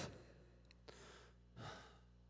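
Near silence with a faint steady hum, and a short breath into a handheld microphone about one and a half seconds in.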